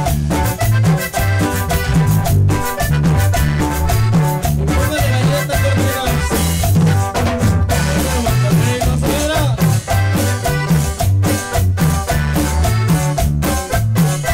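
A live band playing a song, with a drum kit, electric bass and guitars keeping a steady rhythm and a man singing the lead vocal.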